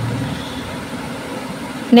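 Steady background noise with no clear source, an even hiss-like rumble, with a low hum dying away just after the start.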